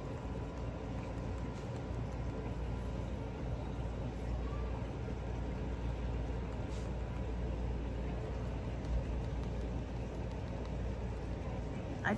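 Steady low background rumble with a faint hiss over it, without clear events.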